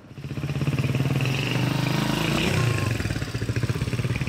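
Small motorcycle engine running as it approaches and passes, growing louder over the first second, then steady with a brief shift in engine pitch near the middle.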